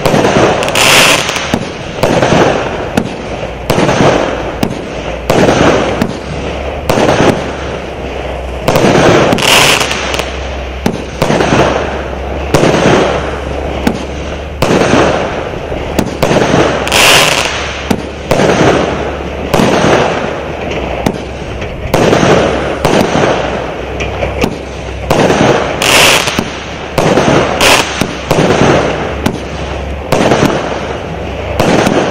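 Lesli All Inclusive 120 firework cake firing a continuous volley of shots, about one a second, each a sharp launch bang followed by the shell bursting overhead.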